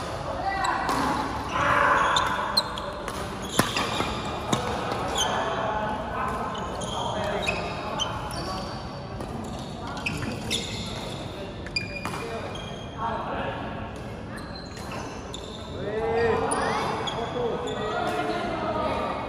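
Badminton doubles rally: sharp racket strikes on the shuttlecock and short squeaks of shoes on the court floor, echoing in a large hall over a background of distant voices.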